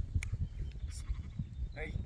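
Low, uneven wind rumble on the microphone in an open paddock, with a short call near the end.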